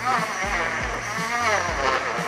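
Portable rechargeable bottle blender's motor running steadily as it blends watermelon juice, with background music playing over it.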